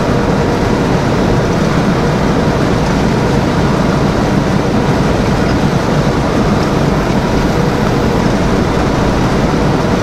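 Semi truck cruising at highway speed, heard from inside the cab: a steady drone of the diesel engine mixed with tyre and road noise.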